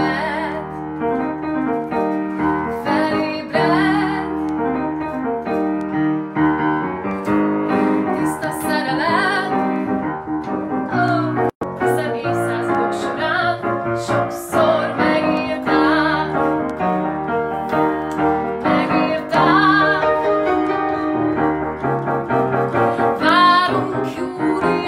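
A woman singing a melody with upright piano accompaniment. About halfway through, the sound cuts out for a split second.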